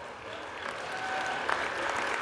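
Applause from members in the House chamber, swelling steadily in strength in answer to a line of a nominating speech.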